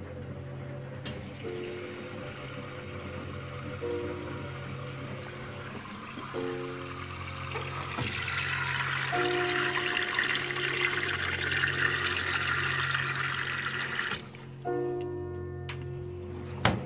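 Water rushing into a 1980 Philco W35A washing machine through its detergent drawer as the inlet valve tops up the tub during the wash. The rush starts about a second in, grows louder around halfway and cuts off abruptly near the end, under background music.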